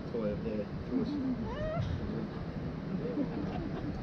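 Indistinct voices talking, some with rising, sliding pitch, over the low steady running of an open tour boat's engine.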